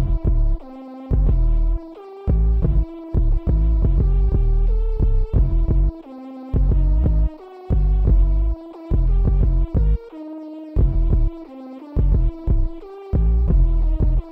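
90s-style boom bap hip hop instrumental beat. A heavy bass line pulses in and out under a looping melodic sample of held notes.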